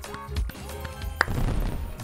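Online slot game's big-win celebration music, a bass beat with short rising sound effects as the win counter tallies up, and a sharp click about a second in.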